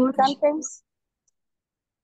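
A short spoken phrase in the first moment, then dead silence for the rest.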